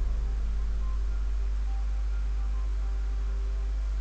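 Steady low electrical mains hum with a faint hiss, and a few faint held tones above it.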